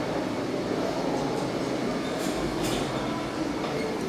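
A ThyssenKrupp high-speed traction elevator arriving at the landing: a steady rushing rumble, with brief scraping sounds in the second half as the doors slide open.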